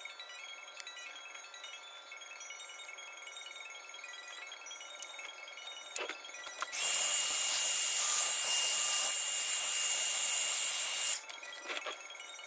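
Electric hair dryer blowing on a wet watercolour wash to dry it: a steady airy hiss with a high whine that starts abruptly more than halfway through, runs about four seconds and cuts off sharply, with a few clicks around it.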